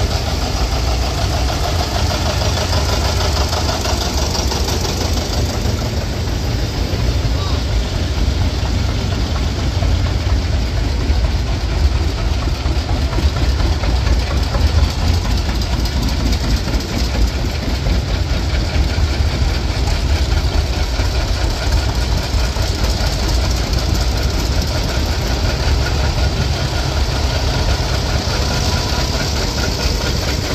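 Antique farm tractors driving slowly past one after another, their engines running steadily with a low rumble, among them John Deere two-cylinder tractors.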